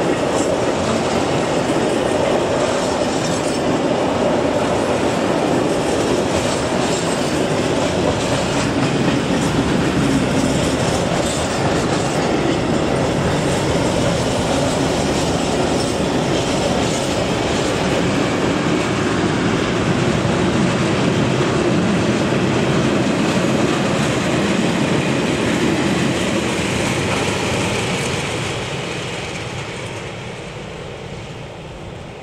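A long freight train's wagons rolling past close by, a steady loud noise of wheels running on the rails. It dies away over the last few seconds as the end of the train moves off.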